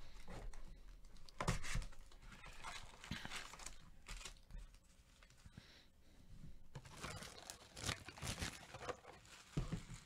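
Clear plastic shrink wrap crinkling and tearing as a trading-card box is unwrapped, then foil card packs rustling as they are handled and stacked. Irregular bursts of crackling, loudest about a second and a half in and again around seven to eight seconds, with a couple of light knocks near the end.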